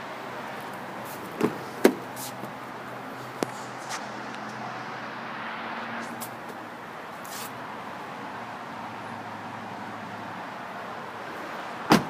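A few light clicks and knocks from handling a car's doors over a steady background hum, then a loud thump near the end as a car door is shut.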